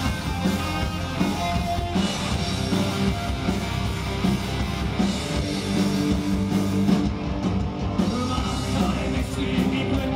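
Punk rock band playing live: distorted electric guitars, bass and drums at a steady driving beat.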